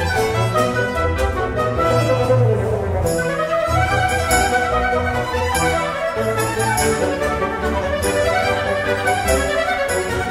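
A chamber ensemble of violins and other strings with winds plays French Baroque dance music live, with the violins leading. A light, regular high clicking joins in about three seconds in.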